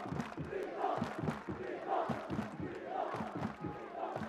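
Football stadium crowd, many supporters' voices at once with faint chanting swells, heard fairly quietly under the match broadcast.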